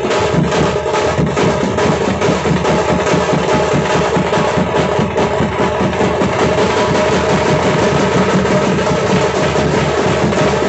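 A Tamil Nadu bandset drum group of large double-headed bass drums and smaller shoulder-slung drums beaten with sticks, playing a fast, dense rhythm loudly and without a break.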